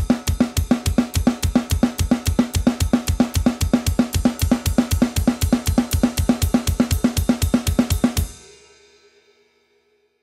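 Drum kit playing a traditional blast beat with both feet on the double bass drum: fast, even alternating snare and cymbal strokes, with a kick drum under each right-hand stroke. It stops about eight seconds in, and the cymbal rings out and fades.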